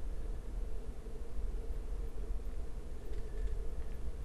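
Steady low hum and hiss of a recording room, with a few faint clicks in the last second.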